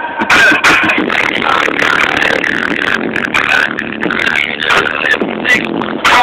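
Rap music playing loudly on a car stereo, heard inside the car's cabin.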